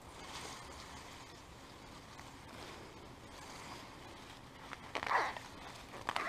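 Faint, steady rustling, with a short, louder sound about five seconds in.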